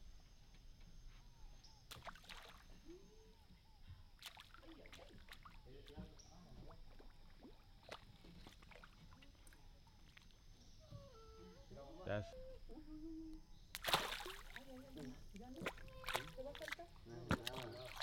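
Water sloshing and splashing against a small boat, with one louder splash about fourteen seconds in, under low voices.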